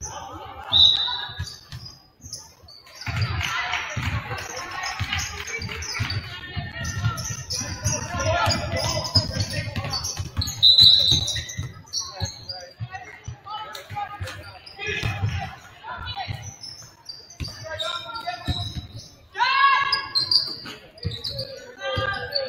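Basketball game sounds in a gymnasium: a basketball bouncing on the hardwood floor, short high squeaks, and players and spectators calling out, with the hall's echo.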